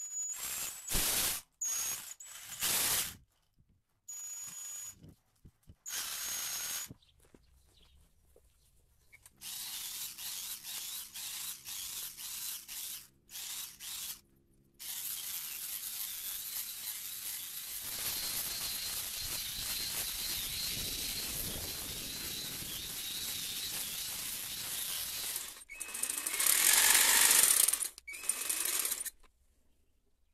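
Jigsaw driving a long homemade zigzag-toothed blade as a hedge trimmer. It runs in a few short bursts, then in longer steady runs cutting through leafy branches, with a louder stretch near the end.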